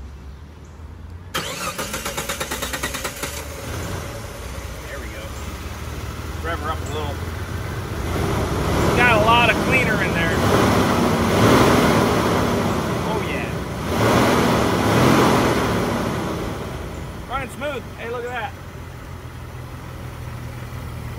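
Jeep Wrangler TJ's 4.0-litre straight-six cranks on the starter for about two seconds, catches, and runs. Its sound swells for several seconds, then eases back toward idle. It is slow to fire because throttle-body cleaner was poured down the intake.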